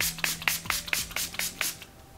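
Milani Make It Last Matte setting spray bottle pumped in quick spritzes, about five a second, misting the face; the spritzing stops near the end.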